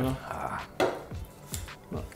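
A few light knocks as a drink can is set down on a small table, over background music.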